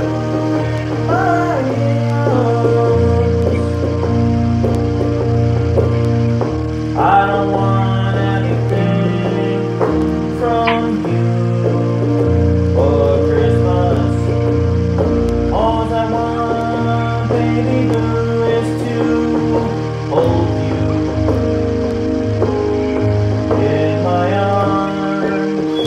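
Electronic keyboard playing held chords over a sustained bass line, the harmony changing every second or two with new notes struck at intervals.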